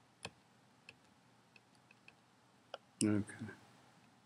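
Calculator keys being pressed one at a time: about five short, separate clicks spaced roughly half a second apart, the first the loudest, as a calculation is keyed in.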